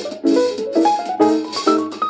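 Small-group jazz recording, instrumental opening: a quick run of struck chords over a drum kit with cymbals.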